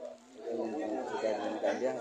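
People talking, voices overlapping in chatter, louder from about half a second in.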